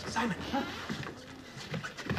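Speech: a man saying a name, then a short vocal sound near the end, with no other clear sound.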